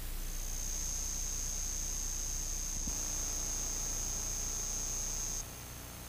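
A steady, high-pitched electronic whine over hiss and a low hum on the soundtrack of a videotape's slate and countdown leader. About five seconds in the whine drops sharply in level but carries on faintly.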